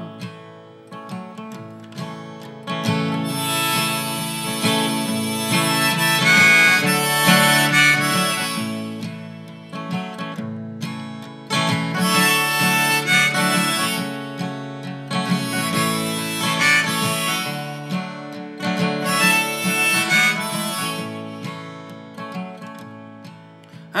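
Harmonica solo over steadily strummed acoustic guitar: four long harmonica phrases, the guitar carrying on alone in the gaps between them.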